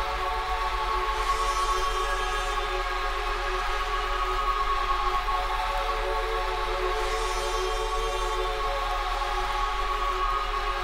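Breakdown in a breakbeat DJ mix: the drums drop out, leaving a sustained, horn-like synth chord held over a steady deep bass note. A faint high hiss swells in and out twice.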